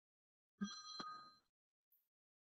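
A smartphone on speaker giving a short electronic tone of several pitches at once, lasting about a second, with a click partway through.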